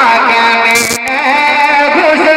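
A man singing through a handheld microphone, holding long wavering notes, with a brief hiss about halfway through.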